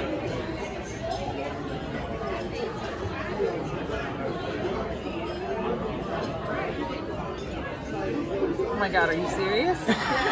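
Many people talking at once in a busy restaurant dining room: a steady mix of indistinct voices, with one voice coming through louder near the end.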